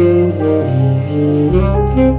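Jazz trio of saxophone, piano and upright bass playing a slow ballad instrumentally, with sustained melody notes over chords. A deep bass note comes in about one and a half seconds in.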